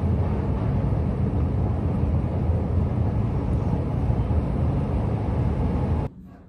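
Steady low rumbling background noise with no distinct events, cutting off abruptly at the end.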